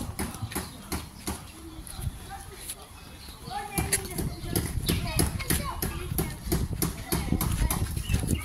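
Faint people's voices talking, over irregular clicks and a low rumble of handling noise from a phone carried while walking. The voices grow clearer about halfway through.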